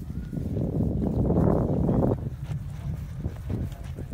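A horse trotting in hand on grass, its hoof falls soft and irregular, under a loud rushing noise that swells in and cuts off sharply about two seconds in.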